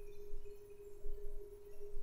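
A steady hum on one unchanging pitch, with a faint low rumble beneath: background noise of the recording setup.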